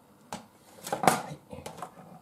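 Kitchen knife and plastic food containers knocking and clattering on a cutting board as they are set down and moved, a few short knocks with the loudest cluster about a second in.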